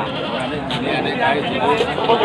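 Goats bleating amid the chatter of a busy livestock market crowd.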